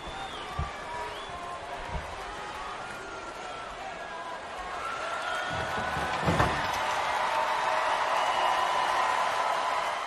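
Heavy thuds about six seconds in as a wheeled equipment cart is shoved over onto a concrete floor, after a few single footfalls. A steady background din runs underneath and grows louder from about halfway through.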